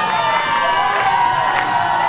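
Audience cheering and shouting, many voices at once, with a few scattered hand claps.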